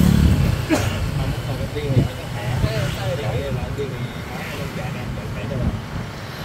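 Street traffic heard from an open vehicle: a close-passing engine's low rumble is loudest at the start, then steady motorbike and traffic noise, with people talking and laughing over it.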